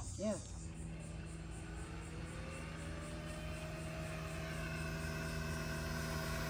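Upgraded Razor MX350 electric dirt bike, a 48 V 1000 W MY1020 motor driving the rear wheel through a chain, whining as it pulls away. The pitch rises over a couple of seconds and then holds steady, and a brief voice is heard just after the start.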